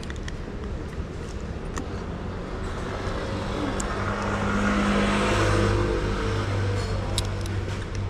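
A road vehicle passing on the street: its engine and tyre noise swell to a peak about five and a half seconds in and then fade, over a steady low traffic hum.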